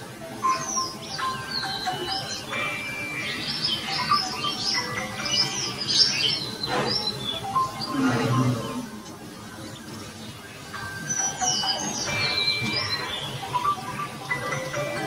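Songbirds chirping and tweeting in quick overlapping calls, in two spells with a lull in the middle, over background music.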